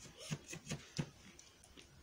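Dog chewing and mouthing a plush toy: a few faint, soft chewing sounds, about three in the first second.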